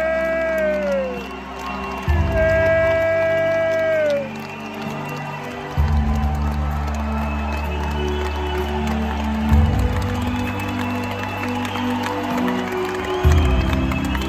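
Live blues-rock band playing a slow passage: sustained bass and chords changing every few seconds under crowd cheering. In the first few seconds, two long held high notes, each dropping in pitch at its end, stand out above the band.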